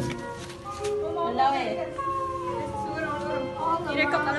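Voices mixed with music, with long held tones that slide slowly downward through the middle.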